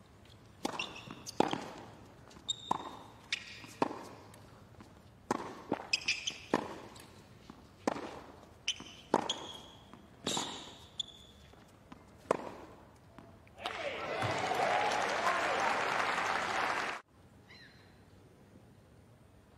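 Tennis rally on a hard court: racket strikes and ball bounces about once a second. Then crowd applause starts near the end of the point and cuts off suddenly a second before the end.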